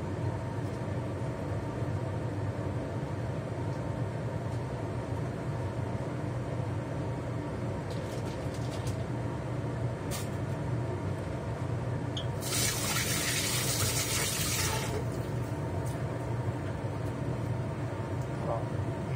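Kitchen range-hood exhaust fan running with a steady hum. A few light clicks come, then about twelve seconds in water runs for about two seconds.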